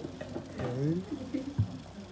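Young men's voices making short, falling "oh" sounds, one about half a second in and another near the end.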